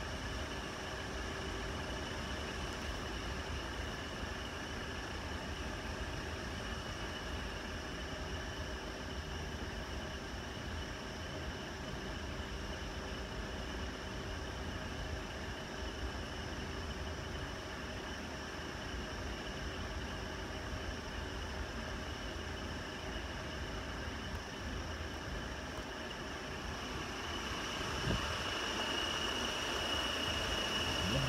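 Large metal drum fan running steadily: an even rushing drone with a few constant whining tones over it, growing louder near the end.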